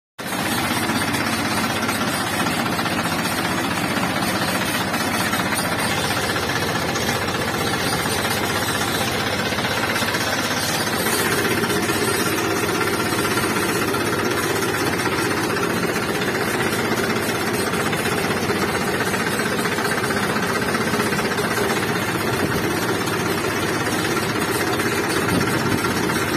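Diesel farm tractor engine running steadily with a rattling clatter as the tractor drives along a dirt track.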